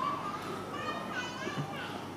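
Faint, high-pitched voices in the background, rising and falling, over a steady low room hum.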